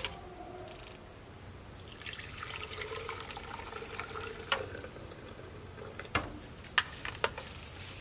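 Milky liquid poured from a metal bowl through a wire-mesh strainer into a blender jug: a steady pouring splash for about three seconds, starting about two seconds in. A few sharp metal knocks follow as the bowl and strainer are handled and set down.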